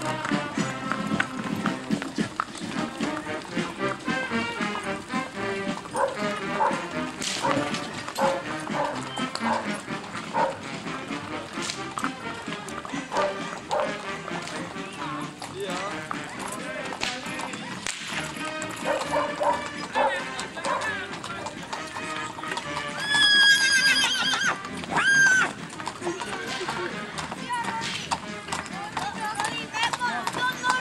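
Horses' hooves clip-clopping on a paved road as riders and horse-drawn carts go by. About 23 seconds in comes the loudest sound: a horse whinnying, a high trembling call repeated twice.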